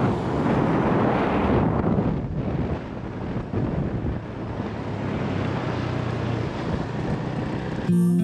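Wind rushing over the microphone while riding a motor scooter, with the scooter's small engine running steadily underneath. The noise eases a little about halfway through.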